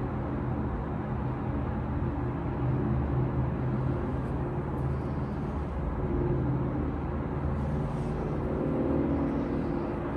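A steady low hum, even in level throughout.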